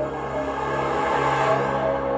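Eerie background music with sustained synthesizer tones.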